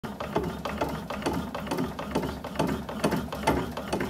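Hand-operated bat-rolling machine working, its mechanism making a regular mechanical stroke about twice a second.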